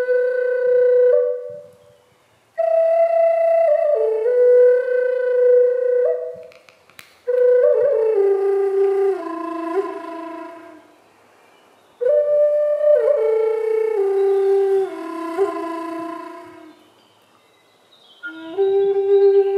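Native American-style wooden flute played solo and slowly. A held note fades out about two seconds in, then come three phrases that each step down in pitch, with a pause of about a second between them.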